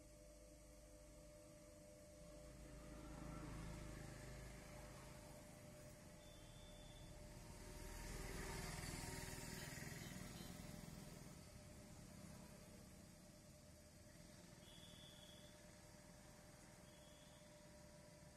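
Faint, steady hum of an electric potter's wheel motor, with two broader swells of noise, about three seconds in and around eight to ten seconds in.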